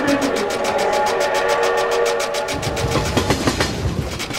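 Rapid, even clatter of a split-flap departure board flipping, about eight clicks a second, over held musical tones. A deeper rumble joins about two and a half seconds in.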